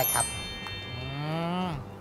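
Editing sound effect for a logo transition: a bright shimmering chime that rings out and fades over about a second and a half. Under it is a low, drawn-out moo-like call that slowly rises in pitch and drops at the end.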